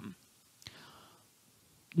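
A pause in a woman's speech, close to a headset microphone: a faint intake of breath with a small mouth click about half a second in, and another click just before she speaks again.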